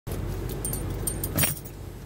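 Low steady hum of a car idling, heard from inside the cabin, with a few light metallic clinks and jingles over it, the loudest about a second and a half in.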